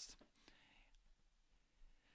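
Near silence: room tone in a pause of narration, with a faint soft hiss in the first second.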